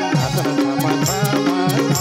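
Instrumental passage of a Nepali devotional bhajan: a held melodic line over a steady hand-drum rhythm, with short cymbal-like hits.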